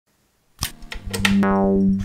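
A few sharp clicks, then a loud, low synthesizer note with a bright buzzy edge and a fast pulsing underneath, held through the last second.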